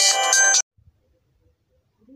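Phone ringtone: an electronic melody of several high steady notes that cuts off abruptly about half a second in.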